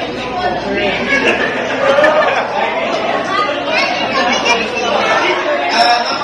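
Many people chatting at once in a large hall, overlapping voices with no single clear speaker.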